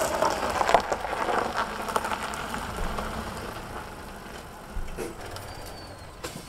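Small Skoda hatchback's tyres crunching over a gravel driveway as the car rolls slowly, growing quieter as it slows to a stop.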